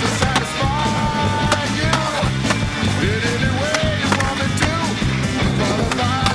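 Music soundtrack with skateboard sounds mixed in: board pops, trucks grinding on a rail and ledge, and wheels landing on concrete, heard as sharp clicks through the music.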